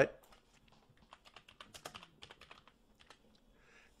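Computer keyboard typing: a quick run of light keystrokes from about one second in to about three seconds in, as a short account name is keyed in.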